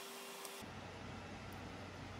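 Faint steady background hiss (room tone), with no distinct handling sounds.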